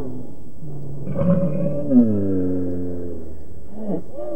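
A man's long, low throaty groan, voiced with his mouth full of food. It starts about a second in and its pitch slides slowly down over a couple of seconds.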